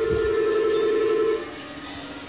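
Two-tone electronic door-closing buzzer inside a Disney Resort Line monorail car, sounding steadily and cutting off suddenly about a second and a half in, with a low thump near the start. A lower steady hum carries on after the buzzer stops.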